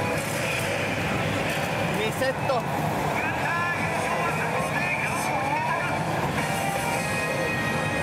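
Pachislot machine playing the music and sound effects of its motorcycle-race bonus-round animation, with gliding tones between about two and five seconds in, over the dense, constant din of a pachinko parlor.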